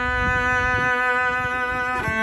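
A newly made cello, bowed, holding one long steady note.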